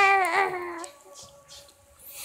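A baby vocalizing: one loud, high-pitched babbling call of a little under a second, its pitch falling slightly.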